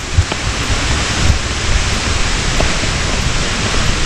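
Steady, loud rushing roar of a nearby waterfall, with a few low bumps of wind or handling on the microphone.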